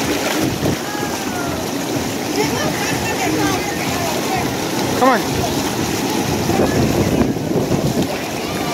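Steady rushing and churning of aerated pool water, stirred up by the jets of a hotel lazy river.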